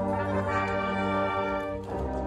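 High school marching band's brass section playing sustained chords, with strong low brass underneath. The sound dips briefly just before the end as the chord changes.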